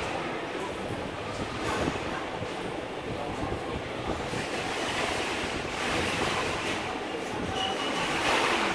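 Steady rushing background noise with no speech and no distinct knocks or clicks, like ventilation or the general din of a large indoor space.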